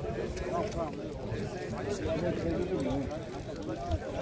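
Indistinct voices talking and calling out across a football pitch, too far off to make out words.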